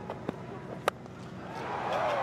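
A cricket bat striking the ball, one sharp crack about a second in, with a fainter tick shortly before it.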